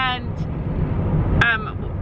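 Steady low road and engine rumble inside the cabin of a car being driven, with a short spoken word at the start and another about one and a half seconds in.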